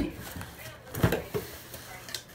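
A dog pawing at a cardboard box and knocking it over, making a few dull thumps; the loudest comes about a second in.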